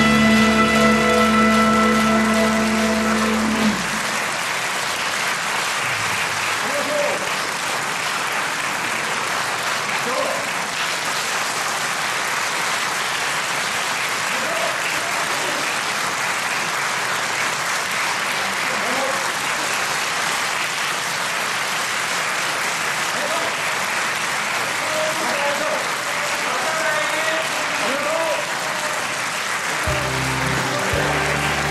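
An electric rock band's last chord rings and cuts off about four seconds in. Audience applause follows and runs steadily, with scattered voices calling out among the clapping.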